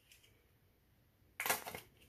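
A nearly empty plastic squeeze bottle of acrylic paint spluttering as it is squeezed: a short burst of air and paint spitting from the nozzle about one and a half seconds in.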